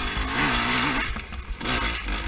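Dirt bike engine revving up and down as it is ridden hard over rough trail, with the throttle eased for a moment just past halfway before it picks up again. Heavy low rumble from wind and bumps runs underneath.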